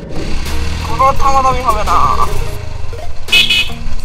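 Street traffic heard from a riding motorcycle: a steady low rumble, a person's voice from about one to two seconds in, and a short high-pitched horn toot near the end.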